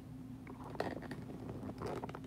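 Faint rustling and small clicks of a phone being picked up and handled, over a low steady hum.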